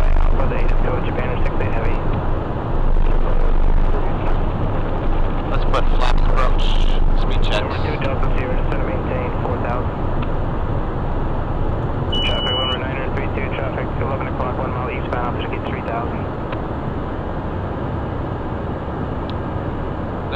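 Cockpit noise of a Cessna Citation 501 business jet descending: a steady rush of airflow and turbofan engines, with the speed brakes extended to slow the jet and a deeper low rumble through the first seven seconds or so. A short high beep sounds about twelve seconds in.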